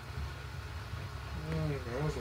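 Low steady rumble of room noise, with a man's voice humming or murmuring softly, its pitch wavering, starting about a second and a half in.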